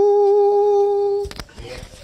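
A woman's singing voice holding one long, steady final note that stops suddenly about a second in. A couple of sharp knocks follow, then faint room noise.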